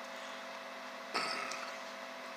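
Faint steady hum of the workbench room, with one short soft noise about a second in.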